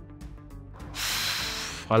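Soft background music, then about halfway a loud hissing rush of air lasting about a second: a man blowing out a long breath just before he answers.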